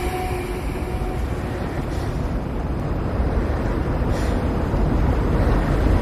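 Low rumbling noise with no tune or beat, slowly growing louder.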